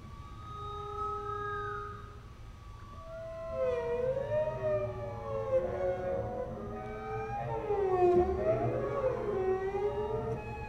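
Double bass played with the bow: a few sustained high tones, then from about three and a half seconds in a tangle of sliding, wavering pitches that grows louder, loudest about eight seconds in.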